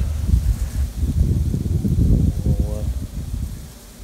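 Wind buffeting a handheld microphone outdoors, an uneven low rumble with some rustling of dry grass, dying down near the end. A short vocal sound from the man comes a little over two seconds in.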